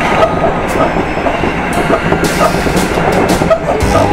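Hankyu 9300 series electric train running at speed, heard from the driver's cab: a steady rumble of wheels on rail broken by irregular sharp clicks from the track.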